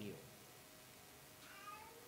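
Near silence: room tone in a pause of speech, with a faint, short, high-pitched call in the last half second.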